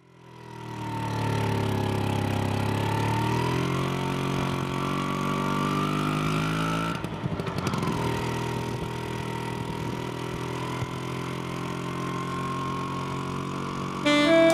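Vintage motor scooter engine running and accelerating, its pitch climbing over the first few seconds, then a brief break about seven seconds in, as at a gear change, before it settles to a steady drone.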